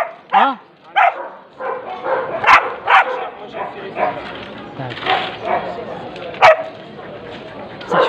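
Dogs barking in short bursts over the chatter of a crowd, with two sharp clicks, about two and a half and six and a half seconds in.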